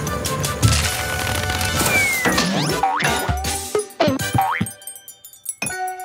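Cartoon background music, then a run of springy sound effects with quick sliding pitches from about two seconds in. Near the end a few sustained keyboard notes start.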